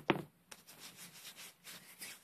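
Fingertips rubbing a dab of petroleum jelly together: soft, irregular rubbing strokes, after two sharp clicks at the start.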